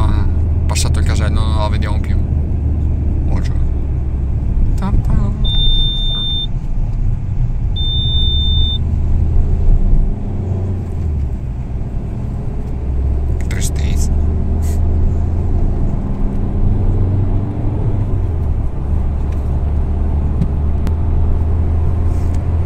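Inside a small car's cabin, its engine and tyres give a steady low rumble as it drives through a toll plaza and onto the motorway. Two high electronic beeps, each about a second long, sound about six and eight seconds in.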